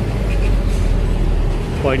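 Steady low rumble of outdoor background noise, with a man's voice starting up near the end.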